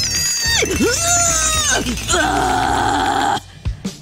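A man straining to twist open a stuck jar lid: a drawn-out groan of effort, then a harsh gritted-teeth strain that cuts off shortly before the end, over background music with a steady beat.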